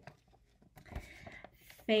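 A near-quiet pause with a faint thump and hiss about a second in, then a woman starts singing a sustained first note just before the end.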